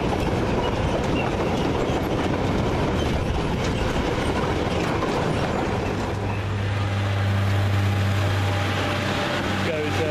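A train of empty open freight wagons rattling and clattering past on the rails. About six seconds in this gives way to the steady low drone of an approaching Class 142 Pacer diesel railbus's engine.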